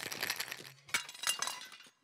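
Ice rattling in a metal cocktail shaker, then, about a second in, glass smashing with a tinkling clatter that dies away.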